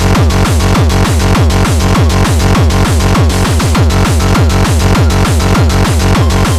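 Fast electronic dance track: a steady kick-and-bass pulse under rapidly repeated synth notes that glide downward in pitch, several each second.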